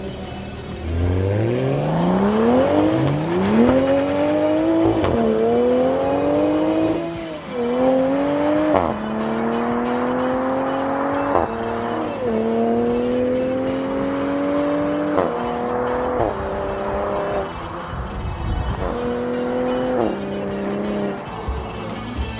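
Camouflaged prototype of the new Toyota Supra accelerating hard from a standing start, its BMW-sourced engine climbing steeply in pitch. It then runs through a series of upshifts, each heard as a sudden drop in pitch before it climbs again.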